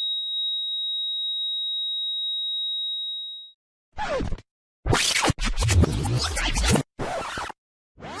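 Film sound-design effects: a steady high pure tone held for about three and a half seconds, then, after a brief silence, a run of harsh, choppy noise bursts that start and cut off abruptly with short gaps between them.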